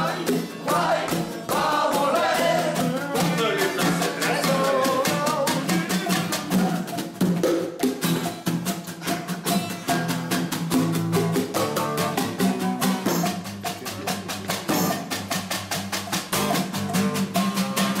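Hand drum beaten with the hands in a fast, steady rhythm, accompanying a group singing a folk song, with steady low notes underneath; the singing stands out most in the first few seconds.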